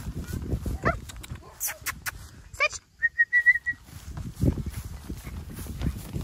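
Footsteps swishing through grass, with a few high squeaky glides and, about halfway through, a quick run of short, high whistled notes.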